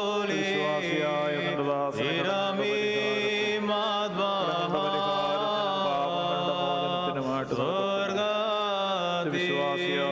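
Orthodox liturgical chant: a voice sings a slow, gliding hymn line in long phrases, with short breaks about two seconds in and again past seven seconds, over a steady low drone.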